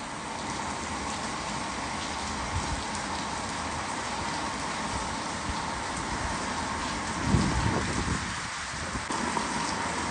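Heavy rain pouring steadily onto a roof, with a brief low thud about seven seconds in.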